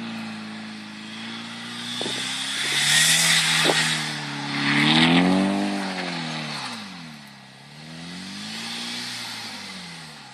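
A 1992 Eagle Talon TSi AWD's turbocharged 2.0 L four-cylinder engine revs up and down over and over as the car spins donuts in snow. The revs peak twice in the first half and swell again near the end. At the loudest moments there is a hiss of spinning tyres throwing up snow.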